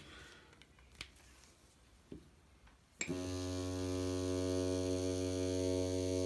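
Hummingbird Bronc V7 rotary tattoo pen, standing upright, switched on about halfway through and running with a steady, even motor hum at 7 volts. A couple of faint clicks come first as the pen is set down.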